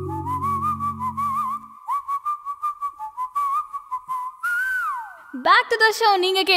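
Music: a whistled tune with vibrato over a light ticking beat, with low chord and bass notes dropping out about a second and a half in. The tune ends on a falling glide, and a woman's voice starts speaking near the end.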